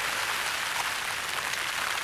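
Light rain falling: a steady, even hiss.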